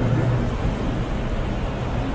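Pause in speech: steady background noise, an even hiss with a low constant hum underneath.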